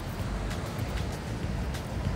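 Wind noise on the microphone, a low uneven rumble, over the steady wash of ocean surf.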